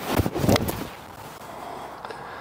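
Titleist T100 iron striking a golf ball off the fairway turf, one crisp strike about half a second in.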